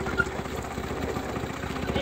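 Go-kart engine idling steadily, with an even, rapid firing rhythm.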